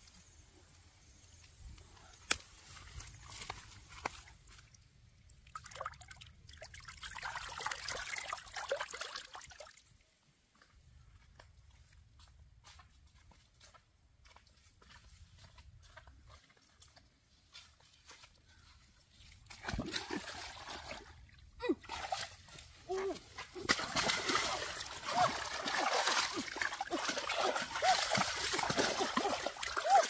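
Water splashing and sloshing: a short stretch about a third of the way in, then a longer, louder one over the last third.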